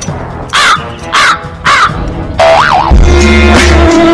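Three short, harsh crow caws about half a second apart, each rising and falling in pitch. A single rising-and-falling tone follows, then music with a heavy bass line starts about three seconds in.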